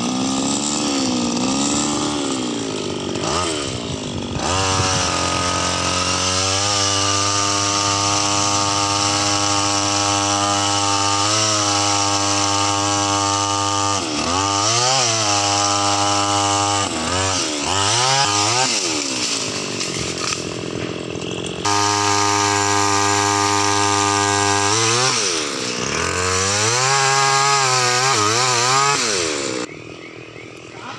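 Petrol pole saw's small two-stroke engine running: low, uneven revs at first, then revved up to a high steady speed about four seconds in as it cuts branches, with the revs dipping and climbing again several times. It stops just before the end.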